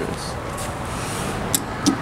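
Steady parking-garage background noise, with a couple of sharp clicks near the end as a finger presses the elevator's up hall-call button.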